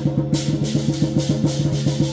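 Lion dance percussion: a big lion-dance drum beaten in fast strokes, about seven a second, with cymbals clashing in time roughly three times a second.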